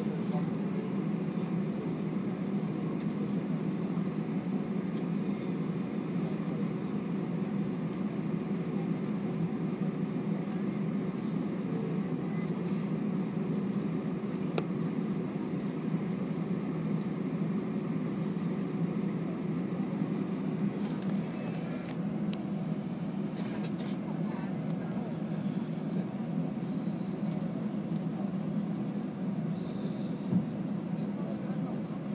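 Steady low drone of an Airbus A320's engines and airflow heard inside the passenger cabin while the airliner taxis before takeoff, holding an even level with no spool-up.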